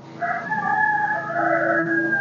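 A rooster crowing: one long call of about two seconds, held at a steady pitch.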